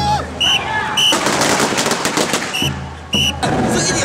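A string of firecrackers going off in a rapid crackling run for about a second and a half, starting about a second in. Short high ringing notes sound several times around it.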